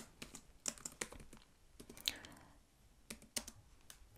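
Computer keyboard being typed on: light, irregular keystroke clicks as a line of code is entered.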